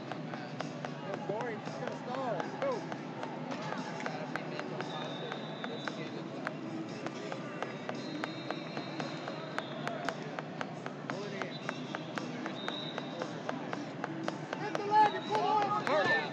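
Wrestling arena ambience: scattered voices and shouts from around the mats, with frequent sharp taps and short squeaks, and a louder shout near the end.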